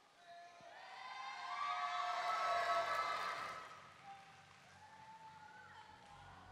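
Audience cheering: many voices at once, swelling over the first couple of seconds and dying away by about four seconds in.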